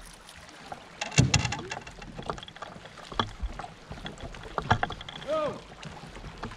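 A few sharp knocks and rattles on the boat as a small caught fish is swung aboard and handled, the loudest cluster about a second in, with a brief voice sound near the end.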